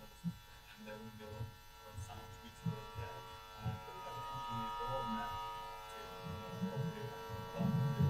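A faint, distant voice of an audience member asking a question away from the microphone, over a steady buzz.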